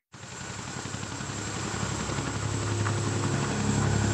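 Tandem-rotor CH-47 Chinook helicopter flying, its rotors and engines making a steady drone with a rapid rotor beat. It starts abruptly and grows steadily louder.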